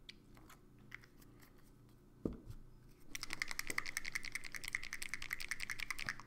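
A dropper bottle of hobby paint shaken hard, its mixing ball rattling rapidly and evenly with a ringing edge for about three seconds, to mix the paint before it is dispensed. A single thump about two seconds in comes before it.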